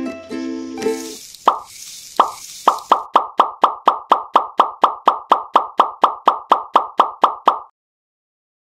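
Ukulele music stops about a second in, and a quick run of short, pitched plopping pops follows, soon settling to about four a second, then cuts off abruptly shortly before the end.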